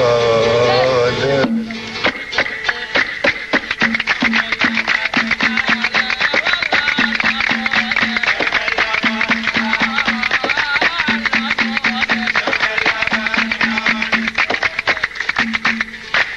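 Folk band music: a sung phrase ends about a second and a half in, then an instrumental passage with a fast, steady beat and a short figure repeated over and over.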